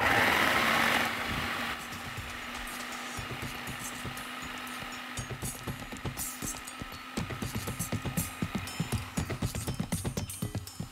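Electric food processor running, its blades chopping raw minced meat with herbs and onion for rice kofta. Loud at the start, then a steady motor hum.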